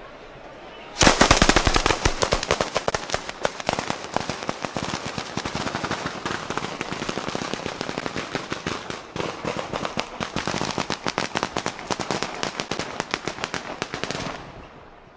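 Mascletà: a dense, rapid-fire string of firecracker bangs from masclets set off on the ground. It starts abruptly about a second in, is loudest at the very start, and keeps going with only a brief break a little past the middle.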